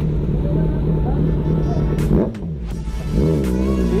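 Yamaha sport motorcycle engine running as the bike moves off, mixed with background music.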